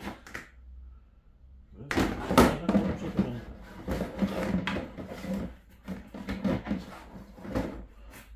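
Plastic poultry drinkers being handled and set down on a plastic tray: a run of hollow plastic knocks and clatters starting about two seconds in.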